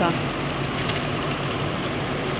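Chicken sautéing in oil in a stainless steel pot: a steady sizzle with a few faint crackles.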